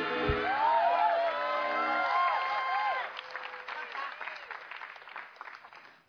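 Studio audience laughing and clapping over a short held musical phrase from the live band. The music stops about two to three seconds in, and the applause fades away after it.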